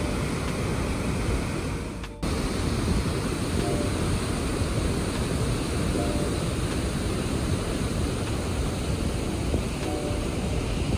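Dettifoss waterfall's heavy flow of water plunging into the gorge, a steady rushing noise with most of its weight low down, broken by a brief dip about two seconds in.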